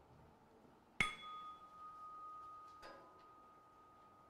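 A small chime struck once about a second in, ringing a single clear tone that slowly fades over about three and a half seconds.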